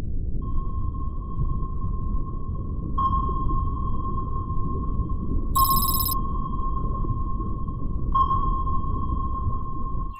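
Submarine sonar pings, struck about every two and a half seconds, each ringing on at one pitch into the next, the middle one the brightest, over a steady deep underwater rumble.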